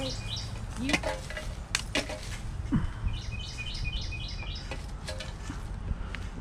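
A songbird singing a quick run of about five repeated chirping notes near the start and again about three seconds in, over a steady low rumble, with a few sharp clicks in between.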